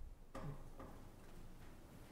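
Quiet room tone with a faint steady hiss, after a brief "uh" from a voice near the start.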